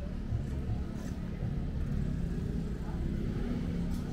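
Steady low rumble of street ambience, like nearby traffic or an idling engine, with faint voices in the background.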